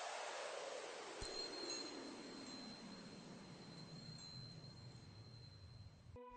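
Faint, fading tail of an intro sound effect: a hissing whoosh that slides slowly down in pitch, with a thin high chime-like tone that starts with a click about a second in and holds until near the end.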